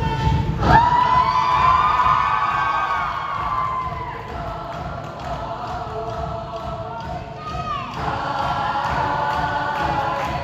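Show choir singing in full chords over a band accompaniment, holding long notes, with a sliding drop in pitch about three-quarters of the way through.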